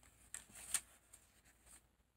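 Faint rustling and light flicks of thin Bible pages being leafed through, with the sharpest flick a little under a second in.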